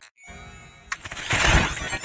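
Heavily distorted, pitch-shifted logo soundtrack of a 'G Major' effects edit: a faint held multi-tone drone, then about a second in a loud dense crashing, glass-shattering-like mix.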